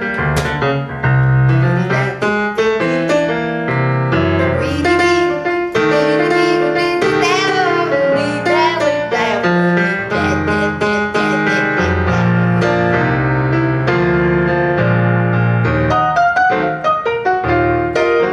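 Yamaha CP50 stage piano playing a slow jazz ballad passage in chords and melody. About the middle, a woman's wordless vocal line glides over it.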